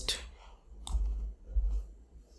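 A single computer mouse click about a second in, with a couple of soft low thumps around it.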